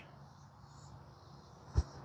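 Quiet outdoor background with faint insect chirping, and a single short thump near the end as the putt is thrown.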